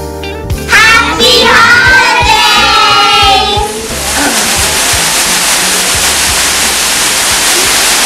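Children's voices in long, high gliding calls over music with a low beat for the first few seconds. Then a loud, steady rush of noise takes over, with the beat still under it.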